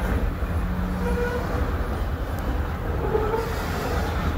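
Freight train of covered hopper cars rolling past below, a steady low rumble of wheels on rail with a couple of faint, brief squeals.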